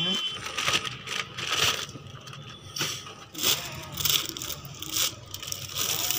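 Cardboard and plastic packaging rustling and crinkling in a series of short bursts as a plastic-wrapped item is pulled out of a cardboard shipping box.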